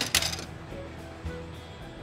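A brief hard clatter right at the start as an empty milk bottle is dropped into a recycling slot, with soft background music underneath.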